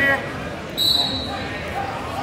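A wrestling shoe squeaks once on the mat about a second in, a short steady high squeak, over a steady crowd murmur in a large gym.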